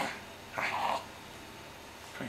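A young baby's brief vocal sounds: a short breathy noise at the start, then a squeaky half-second coo about half a second in.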